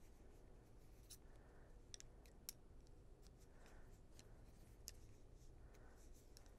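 Faint, near-silent knitting: bamboo knitting needles give a few light clicks against each other, with soft rustles of wool yarn being worked.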